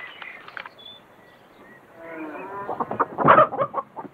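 Chickens clucking and cackling, getting louder about two seconds in, with the loudest calls just after three seconds.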